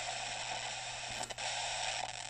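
Portable shortwave/FM radio's speaker hissing with static while it is tuned between FM stations, with a short dropout and crackle a little over a second in.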